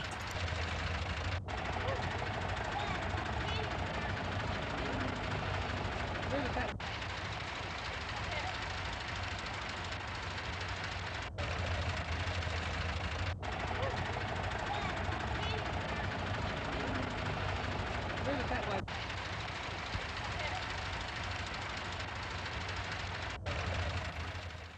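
Location sound of farm tractors running in a slow convoy, a steady engine drone under the indistinct voices of a roadside crowd. The sound is cut abruptly about six times, every few seconds, as the film segments change.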